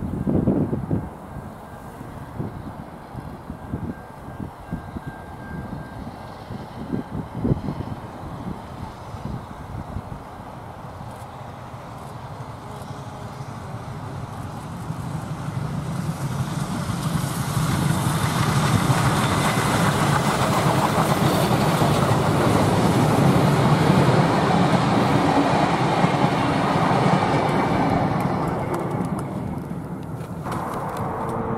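Victorian Railways K-class 2-8-0 steam locomotive K183 hauling carriages and a water tanker on a load test. It grows louder from about halfway through, is loudest as it runs close by, then fades away near the end.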